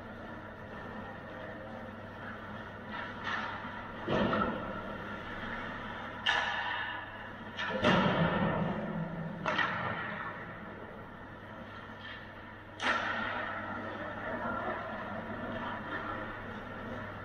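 Ice hockey play in an indoor arena: a series of sharp knocks of sticks and puck against the boards, the loudest around eight seconds in, each trailing off in the rink's echo.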